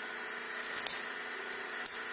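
Crisp fried pork rind (chicharrón) being broken apart by hand, giving a few faint crackles a little under a second in and a click near the end, over a steady faint hum.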